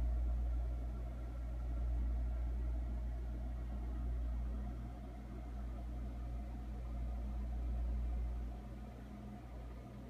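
Steady low rumble with a faint electrical hum, background noise, easing off a little near the end.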